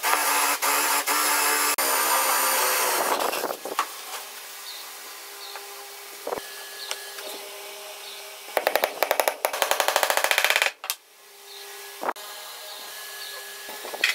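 Power drill boring a hole through a hardwood joint for about three and a half seconds, then a few light knocks. About two-thirds of the way in, a loud burst of rapid clicking lasts roughly two seconds and stops suddenly.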